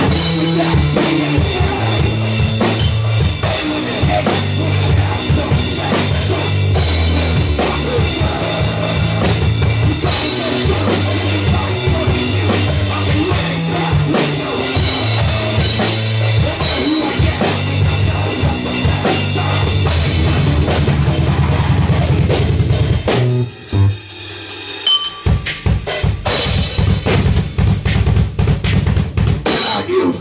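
Amateur rock band playing live and loud, led by a drum kit with heavy bass drum, snare and cymbals over sustained low amplified notes. About three-quarters of the way through the music drops out briefly, then returns with rapid, closely spaced drum hits.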